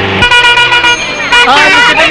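A bus horn honks once for just under a second. Then a crowd of schoolchildren breaks into excited shouting and chatter.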